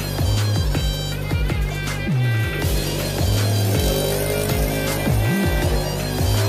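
Background soundtrack music with a heavy electronic beat and deep bass notes that slide down in pitch; a held melody line comes in about halfway through.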